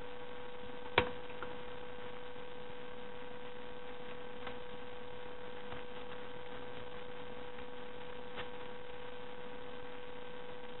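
A steady electrical hum throughout, with one sharp click about a second in and a few faint snips later as small scissors cut through folded paper.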